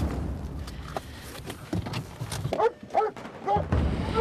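Police dog barking and whining, a run of short calls in the second half, over a low rumble.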